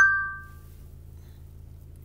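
A light clink of a metal-tipped tool against a small ceramic dish, ringing with two clear tones that die away within about half a second.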